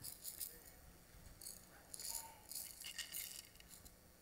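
Hand rattle shaken faintly in several short, irregular bursts.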